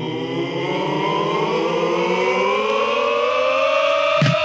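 A sustained, siren-like tone rising slowly and steadily in pitch, as a transition in the background music that leads into the next song.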